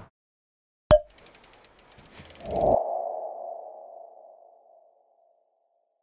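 Logo sting sound effect: a sharp hit about a second in, a quick run of ticks at about ten a second, then a swell into a ringing ping-like tone that fades out over about a second and a half.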